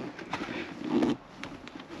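Light clicks and knocks from a stuck rear-seat headrest being wiggled and pulled up on its metal posts while its release buttons are squeezed.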